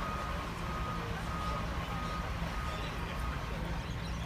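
A vehicle's reversing alarm beeping in a steady series of short, evenly spaced beeps, somewhat under two a second, fading out near the end, over a steady low engine rumble.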